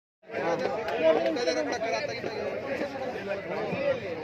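Overlapping chatter of a group of men talking at once close by, starting a moment in.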